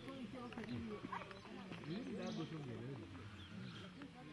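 Indistinct voices of several people talking at a distance, overlapping, with no clear words.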